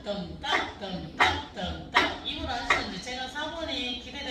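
Four sharp wooden knocks of drumsticks, evenly spaced about three-quarters of a second apart, over people talking.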